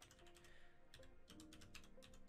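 Faint typing on a computer keyboard: a quick run of key clicks with a short pause about a second in, over quiet background music.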